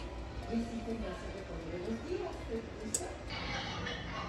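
Faint background voices in a room, with a single sharp click about three seconds in.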